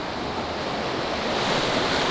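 Steady rush of a fast-flowing mountain river's white water, getting gradually louder.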